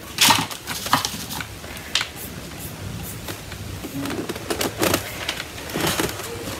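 Scattered sharp clicks and rustles of hands handling stiff fabric on a wooden basket frame, with a plastic tagging gun lifted away and set down on the table. The loudest clicks come just after the start, about a second in and near the end.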